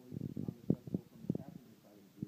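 Indistinct, muffled talking that the words cannot be made out of.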